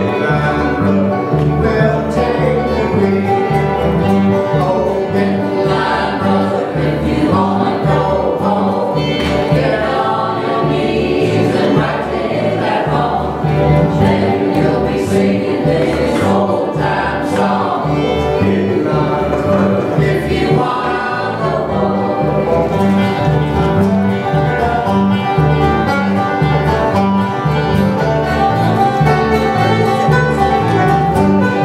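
Live band playing and singing a bluegrass gospel song, several voices together over strummed strings and a steady alternating bass line.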